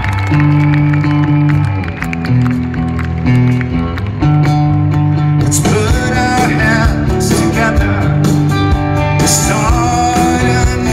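Rock band playing a song's opening live: electric guitar and bass notes, with the sound filling out about halfway through as the rest of the band comes in.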